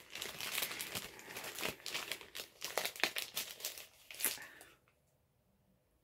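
Clear plastic wrapping and tissue paper crinkling in irregular crackles as a wrapped tube of shower gel is handled and unwrapped. The crinkling stops nearly five seconds in.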